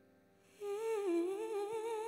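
A woman's voice comes in about half a second in with a soft, wordless held note with vibrato. The note dips and climbs back up over the fading tail of a piano intro.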